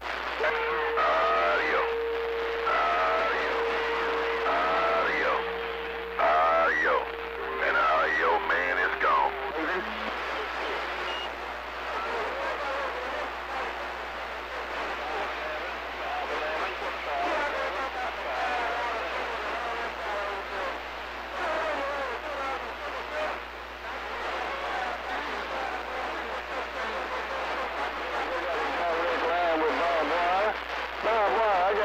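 A CB radio receiver's speaker carrying distant skip: several stations talking at once, garbled and unintelligible. A steady whistle sits over the voices for the first seven seconds or so, then drops to a lower whistle until about ten seconds in.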